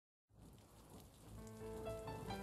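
Opening music fading in from silence: a faint hiss-like wash, then held notes that come in partway through and grow steadily louder.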